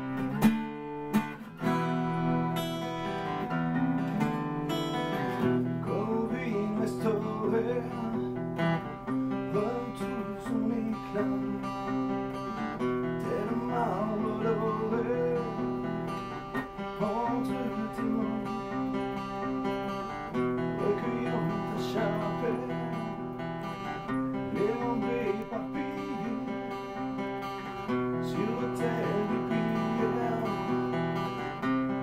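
Acoustic guitar strummed live in chords, with a man singing over it from about six seconds in.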